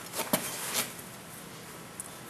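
ATV roller drive chain being pushed and flexed by hand to check its slack: a few light clicks in the first second, then faint background hiss.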